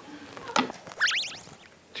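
A brief edited-in sound effect of several quick rising whistle-like sweeps about a second in. Before it come faint clinks and scraping of a metal ladle pressing breadcrumbs onto a thick cutlet on a plate.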